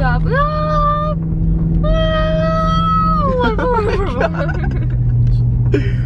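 A woman singing two long, high held notes in a playful sing-song, followed by a brief wavering run of voice. Under it runs the steady low hum of the moving car heard from inside the cabin, which drops in pitch about four and a half seconds in.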